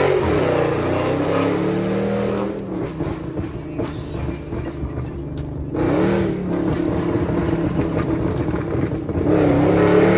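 Tuned car engine and exhaust pulling hard through the gears, heard from inside the cabin with a window open. The pitch climbs, eases off for a few seconds with a few sharp crackles, then climbs again twice.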